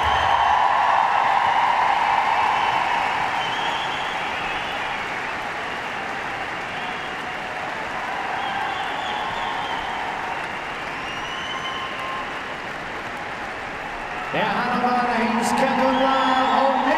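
A large audience applauding, loudest at first and easing a little. A man starts speaking over it near the end.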